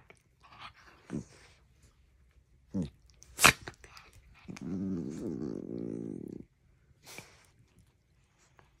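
Two small dogs play-fighting: a couple of short falling grunts, a sharp click about halfway through, then a long play growl lasting about two seconds.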